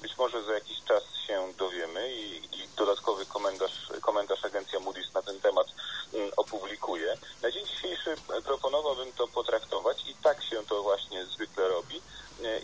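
A person talking without pause, with a faint steady high-pitched whine underneath.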